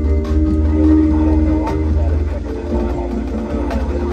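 High school marching band playing sustained held chords, with a few sharp percussion strikes.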